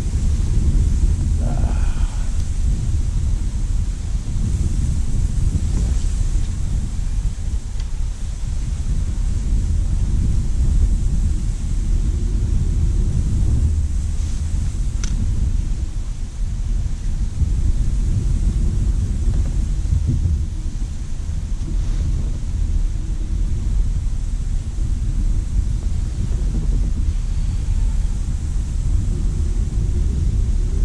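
Strong wind buffeting the microphone: a loud, steady low rumble that rises and falls with the gusts.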